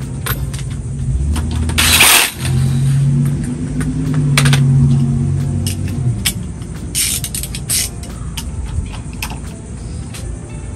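A low vehicle-engine rumble that swells and fades over several seconds, with a short loud hiss about two seconds in. Scattered sharp metallic clicks from hand tools and engine parts being handled, a quick cluster of them near the end.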